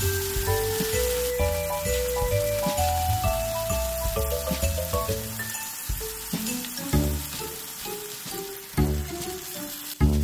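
Gentle background music with a stepping melody over pork sizzling in a frying pan as it is stirred. There are a couple of sharp knocks in the second half.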